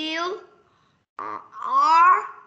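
A child's voice making two long, drawn-out vocal sounds, each rising in pitch, the second one louder. They come as the child hesitates while spelling a word aloud.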